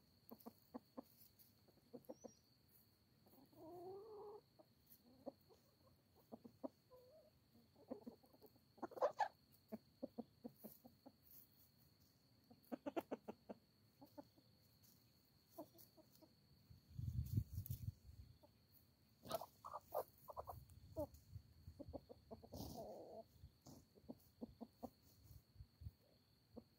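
Free-ranging hens clucking softly and intermittently as they forage close by, among many short sharp clicks from their beaks pecking at the ground. A brief low rumble comes about 17 seconds in, and a faint steady high tone runs underneath.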